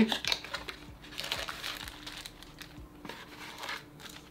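A small cardboard accessories box being opened and the plastic bags of parts inside crinkling as they are handled and pulled out, in irregular rustles.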